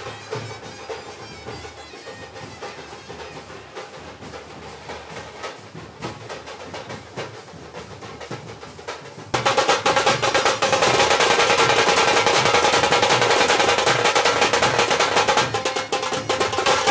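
Procession band music: drums playing fast rolls over a steady sustained melody tone. It becomes suddenly much louder about nine seconds in.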